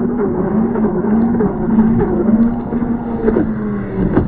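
Electric RC racing catamaran's twin 5682 brushless motors running at full speed, a steady wavering whine over the rush of the hull and spray on the water. Near the end the pitch wobbles as the boat starts to lift.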